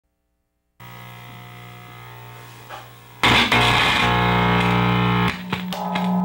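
Distorted electric guitar: after a moment of silence a single held note rings quietly, then about three seconds in loud distorted chords crash in and ring, with a few sharp strums near the end. It is the intro of a punk rock song.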